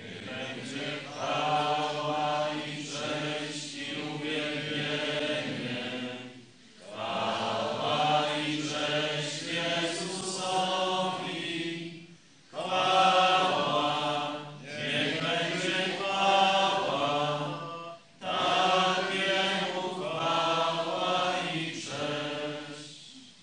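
Congregation singing a hymn in Polish, in sung phrases of about six seconds with short breaks between them.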